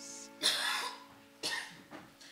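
Two short coughs about a second apart in a reverberant church, with a faint held musical tone fading underneath.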